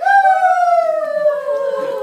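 A woman's long, loud wail, starting suddenly and sliding slowly down in pitch.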